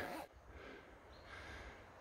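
Faint outdoor quiet with soft breath sounds from the person filming as he walks, just after the last word fades.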